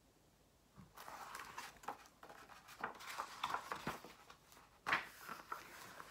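Pages of a hardcover picture book rustling and flapping as a page is turned and the book is handled, starting about a second in. A sharp slap of paper near the end is the loudest sound.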